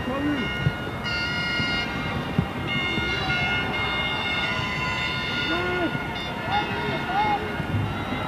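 Football stadium crowd noise with several fans' horns sounding long, steady high notes that overlap, first about a second in and again from about three seconds on. A commentator's voice runs faintly underneath.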